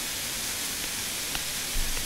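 Steady hiss from the recording's noise floor, with a faint click a little over a second in and a short low thump near the end.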